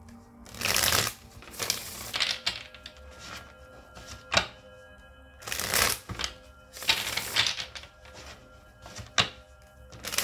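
Large tarot deck being shuffled by hand: about six short bursts of rapid card flicking, with a couple of sharp snaps between them.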